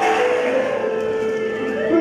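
Music starts suddenly and loudly, with long held notes and a slow rising glide near the end.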